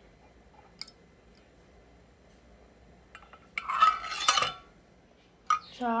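A metal ladle against a glass jar while cream is ladled in: a faint clink about a second in, then a loud clattering scrape lasting about a second, two thirds of the way through.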